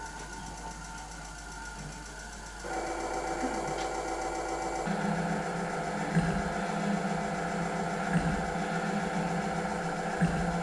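Improvised noise music from amplified small objects and electronics: a dense, steady mechanical buzz of layered tones. It thickens about three seconds in, and again about two seconds later when a strong low hum joins.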